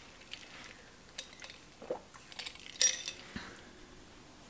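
Faint handling sounds: scattered light clicks and taps, with a brief rustle about three seconds in.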